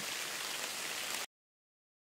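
Rain sound effect: a steady, even hiss of falling rain that cuts off suddenly just over a second in.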